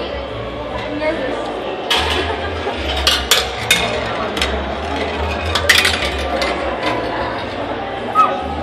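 Gumballs rolling and clicking through a kinetic sculpture's metal rail and chutes: a string of sharp clinks, most between about two and six seconds in, over crowd chatter.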